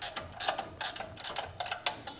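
A 5/8-inch wrench working a bolt loose on the alternator mount: a quick, uneven run of light metallic clicks, about five a second.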